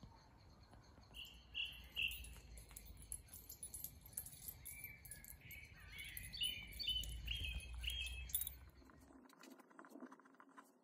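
A songbird singing short phrases of clear notes, over a low rumble on the microphone and faint ticks of footsteps on the path. All of it cuts off suddenly about nine seconds in.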